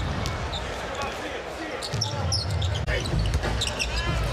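Live arena sound of a basketball game: a ball dribbled on a hardwood court with sharp bounces, sneakers squeaking in short chirps, and a steady crowd murmur in a large hall.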